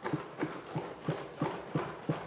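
Wooden desks thumped in a steady rhythm, about three knocks a second: legislators' desk-thumping in approval of a speech.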